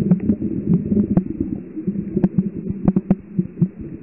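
Low, irregular rumbling and throbbing with scattered faint clicks, as picked up by a camera microphone under water.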